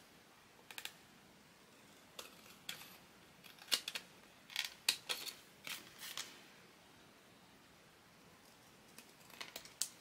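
Small scissors snipping paper on the edge of a card, a string of short, sharp cuts, then a pause of a few seconds and a couple more snips near the end.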